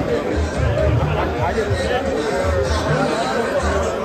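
Crowd chatter over music with a deep bass, voices talking close by.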